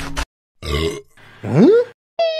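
Meme sound effects of a cat eating: a short noisy bite sound, then a loud burp that rises in pitch.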